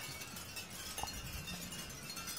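Faint background ambience with no distinct event, apart from one brief, faint high note about a second in.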